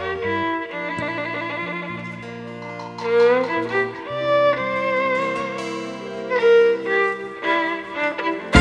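Amplified violin playing a slow melody of long held notes with vibrato, over sustained low accompanying chords from a live band.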